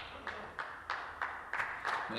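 Light, sparse applause: a few people clapping at about three claps a second as a question ends in a legislative chamber.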